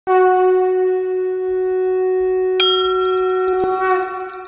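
A conch shell (shankh) blown in one long steady note. About two and a half seconds in, a small brass temple bell rings in, struck twice with a bright ringing. Conch and bell are the sounds that open a Hindu aarti.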